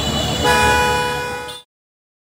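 A vehicle horn sounds one steady honk for about a second, starting about half a second in, over the low rumble of street traffic. All sound then cuts off suddenly.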